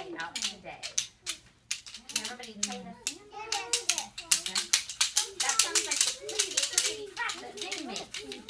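Many quick clicks and taps from small hand rhythm instruments handled by toddlers and adults, growing denser from about three seconds in, under children's babble and women's chatter.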